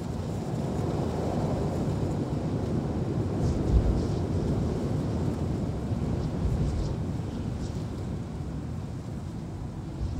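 A low, rumbling noise like wind. It swells slightly, peaks about four seconds in, then eases.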